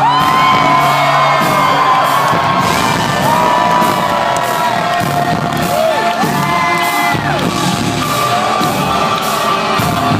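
Gothic synth-rock band playing live in a club, with a steady beat, synths and sung vocals, heard from inside the crowd. Whoops from the audience sound over the music.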